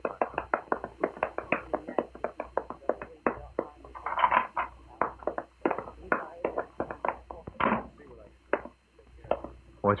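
Radio-drama sound effect of footsteps: people walking quickly together, a steady run of short steps several times a second.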